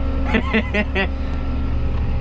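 John Deere tractor's diesel engine running steadily, heard from inside the cab, with a steady drone and a few constant tones. A man's voice is briefly heard during the first second.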